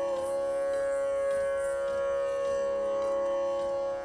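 Carnatic music accompaniment in raga Gambheera Nattai: one long, steady held note with no ornament, over a lower drone.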